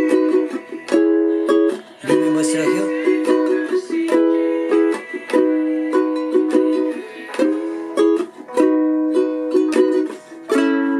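Ukulele strummed in a steady rhythm, several strokes a second, playing the chord progression E, B, C♯m, B.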